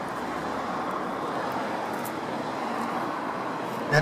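Steady background noise of distant road traffic, with a couple of faint light ticks about one and a half to two seconds in.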